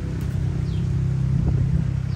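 A motor running steadily with a low rumble, and a few faint, short high chirps over it.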